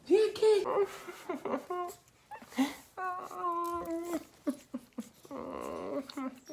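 A man's wordless, high-pitched cooing and baby-talk to a puppy, with some long held notes about halfway through. Near the end there is a rustling as the puppy climbs on him.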